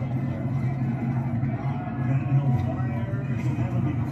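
Television football broadcast audio: a commentator's voice over a steady wash of stadium crowd noise, cutting in suddenly just before and running on unbroken.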